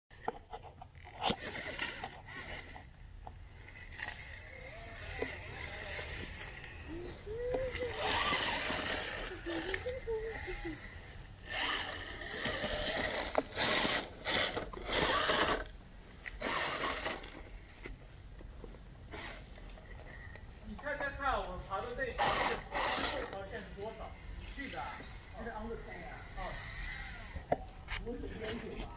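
Electric RC rock crawlers working over rock and dry leaves: a thin, high motor whine coming and going, with tires scraping and crunching on stone. Quiet voices come in now and then.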